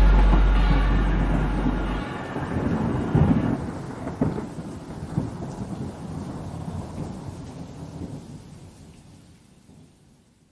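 Thunderstorm sound effect closing out the song, with thunder rumbling and cracking over rain, fading steadily to silence. A low bass note holds under it and stops about two seconds in.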